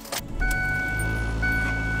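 A car's engine coming on and running at idle, a steady low hum from about half a second in. A steady high tone sounds over it and breaks off briefly in the middle.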